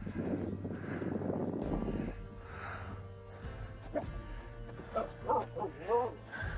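Finnish Spitz giving several short yips and barks that rise and fall in pitch in the last two seconds, excited at play in the snow. A rough rustling noise fills the first two seconds.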